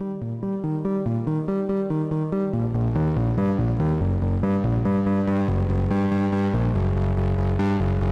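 AE Modular GRAINS module running the Scheveningen West Coast-style firmware, playing a fast arpeggiated sequence of short synth notes through an envelope-gated VCA. About two and a half seconds in, as a knob on the module is turned, the tone grows fuller and louder with a strong bass.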